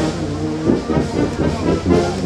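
A street brass band playing held notes, with people talking in the crowd over it.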